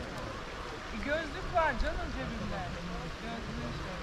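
Indistinct voices of people talking in the background, over a steady low background noise.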